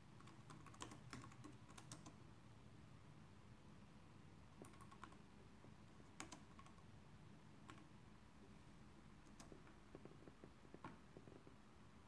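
Faint, irregular typing on a laptop keyboard: scattered single keystrokes with short pauses between them.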